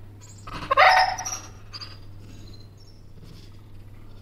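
An excited dog gives one loud, pitched cry lasting about a second, about half a second in, followed by a few faint short sounds.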